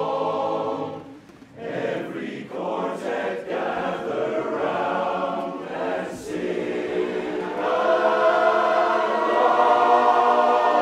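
Men's barbershop chorus singing a cappella in close harmony. The voices break off briefly about a second in, then come back and swell into a loud, held chord near the end.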